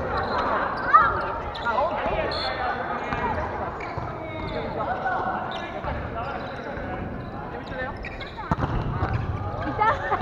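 Players' voices calling and talking on a volleyball court, with sharp thuds of the volleyball being struck or hitting the floor. The loudest thud comes about a second in, and several more follow near the end.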